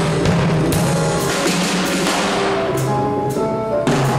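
A Groove Percussion drum kit played with sticks, with repeated cymbal and drum hits roughly every half second to second, over a pitched melodic accompaniment with a bass line.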